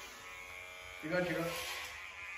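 Corded electric hair clippers running with a steady buzz as they are worked over a head of long hair to shave it off.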